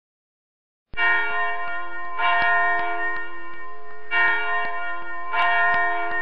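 Bell chimes ringing as an intro sting, starting about a second in. There are about four strokes, each ringing on with steady overtones into the next.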